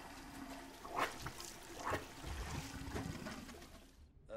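Faint water sloshing and trickling from a flood, with a couple of soft knocks about one and two seconds in.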